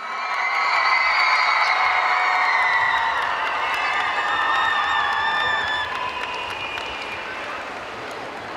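Arena crowd cheering, with many high-pitched voices screaming over scattered clapping. It is loud at first and eases off after about six seconds.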